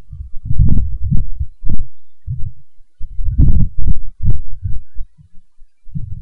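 Loud, irregular low thumps and rumbles coming in clusters, with a brief lull about two seconds in and quieter patches near the end.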